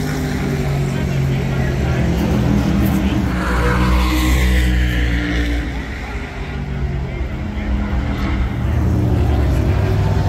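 V8 race car engines running on pit road, a steady low rumble. A higher engine sound swells and falls away about four seconds in. Voices are mixed in.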